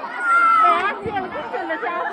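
Crowd of many people chattering and calling out over one another, with one loud, drawn-out high shout held for most of the first second.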